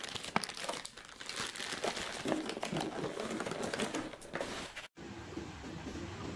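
Thin plastic produce bag crinkling and crackling as it is handled. About five seconds in, the crinkling cuts off abruptly and gives way to steady background noise.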